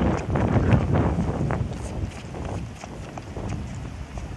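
Sneakered footsteps running on a hard court with a soccer ball being tapped and kicked: a string of quick knocks, busiest in the first second or two and thinning out after.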